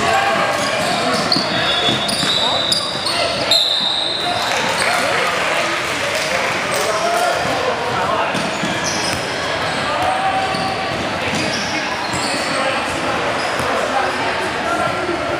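Basketball bouncing on a hardwood gym floor among players and spectators talking indistinctly, all echoing in a large hall. A brief high squeal comes about four seconds in.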